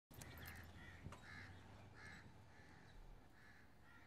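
Crows cawing faintly in a run of short calls about every half second, with a single sharp click about a second in.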